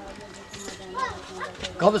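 A faint short animal call about a second in, over a low background hum, then a man's raised voice near the end.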